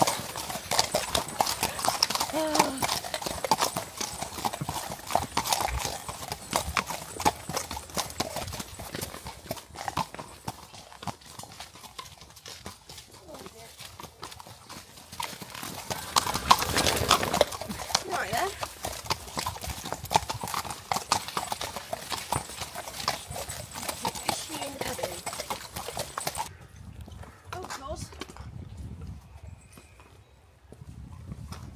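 Horses' hooves clip-clopping at a walk on a dirt track, a steady run of strikes. About halfway through comes a loud rush of noise lasting a couple of seconds, and near the end the sound turns suddenly duller and quieter.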